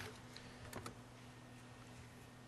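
Quiet room tone with a steady low hum and a few faint key clicks around the middle as the lecture slides are advanced.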